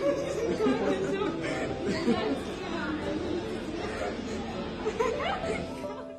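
Excited chatter: several voices talking over one another.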